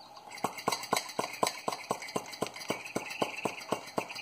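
Hand-held brake bleeder vacuum pump being squeezed over and over, its handle clicking about four times a second from about half a second in, as it draws a vacuum on a mason jar through a FoodSaver jar-sealer attachment.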